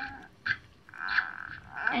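Squeaky gurgling from a doll's feeding bottle as lemonade drains out of it into a Baby Alive doll's mouth: a few short squeaks at one steady pitch and a longer one about a second in.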